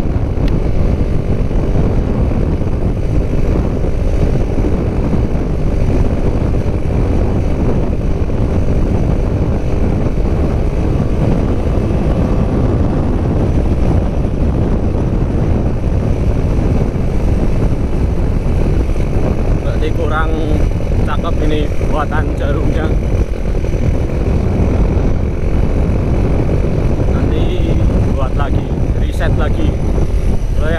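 Honda Megapro single-cylinder motorcycle engine running as the bike is ridden, under heavy wind rumble on the microphone, its tone rising and falling a little with the throttle. The carburettor's needle setting is still being tuned, and the rider judges the mid-range still too lean.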